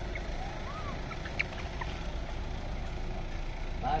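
Steady low outdoor rumble, with a faint short rising-and-falling call about a second in and a small sharp click shortly after.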